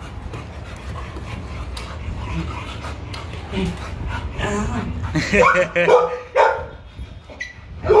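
Pit bull-type dog whining and yipping. The calls are low at first, then a run of loud, high, wavering whines comes about five to six and a half seconds in.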